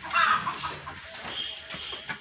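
A bird's call: a short squawk in the first half-second, rising in pitch at its end, then a fainter high chirp about a second and a half in.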